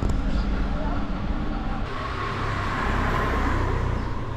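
A car passing on the street, its engine and tyre noise swelling to a peak about three seconds in over a steady low rumble.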